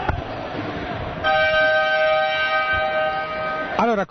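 Basketball arena's scoreboard horn sounding one loud, steady blast of about two and a half seconds. It starts about a second in over crowd murmur and signals the start of the fourth quarter.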